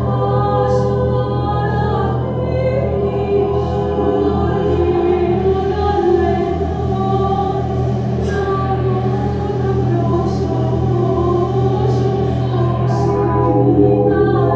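A woman's voice singing long held notes into a microphone, layered over a steady low drone.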